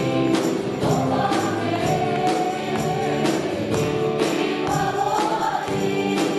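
A group of women's voices singing a worship hymn together into microphones, with guitar accompaniment and a steady beat about twice a second.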